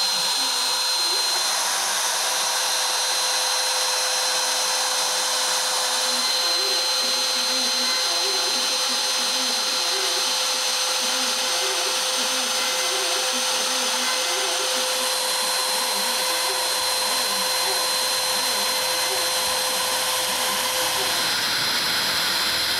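Router spindle on an X-Carve CNC machine running at a steady high whine while a small bit carves the final pass into a pine plaque. Fainter irregular tones shift underneath as the head moves.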